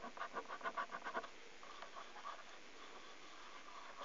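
A coin scratching the silver coating off a scratchcard: a quick run of short scraping strokes, about seven a second, over the first second or so, with a few fainter scrapes after.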